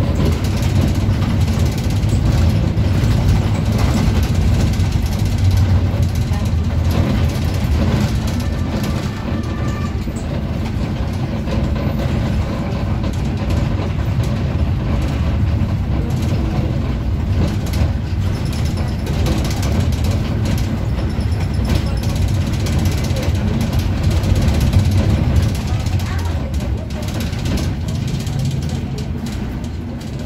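Interior of a city bus in motion: a steady low rumble of the engine and tyres on the road, with scattered small knocks and rattles from the cabin.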